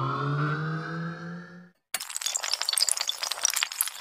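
Intro animation sound effects: a held tone that rises slightly in pitch and fades out just under two seconds in, then a long crackling, tinkling glass-shattering effect.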